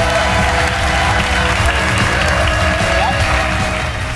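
Studio audience applauding over loud music with a bass beat. The clapping and music fade near the end.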